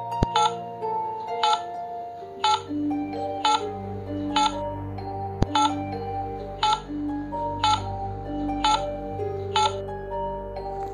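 Countdown ticking sound effect, about one sharp tick a second, ten ticks in all, over sustained background music.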